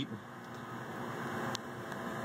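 A steady low mechanical hum with an even hiss, with one faint click about one and a half seconds in.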